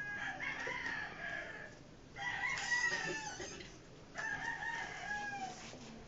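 Rooster crowing: three long calls, one after another.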